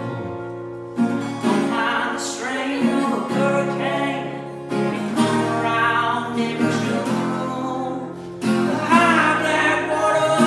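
An acoustic guitar being strummed while a man sings along.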